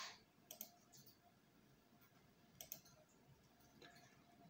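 Faint computer mouse clicks over near silence: a quick double click about half a second in and another about two and a half seconds in.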